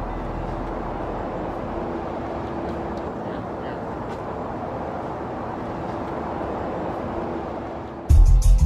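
Steady outdoor background noise of an urban lot: a constant even rumble with a faint steady hum and no clear single event.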